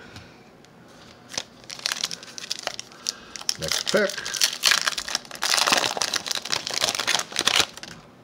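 A Donruss football card pack wrapper being torn open and crinkled by hand, in a run of rustling bursts that grows louder and denser in the second half.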